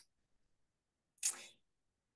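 Near silence, broken by one brief sound about a second in.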